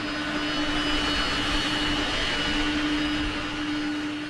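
An El Al jet airliner's engines running on the apron: a steady roar with a steady hum and a high whine over it, easing off slightly near the end.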